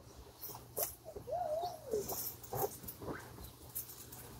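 Short squeaks and soft pats from small hands rubbing and pushing on a giant inflatable vinyl beach ball. There are several brief pitch-sliding squeaks, one about a second in that rises and falls, and one that slides up near the end, among a few light taps.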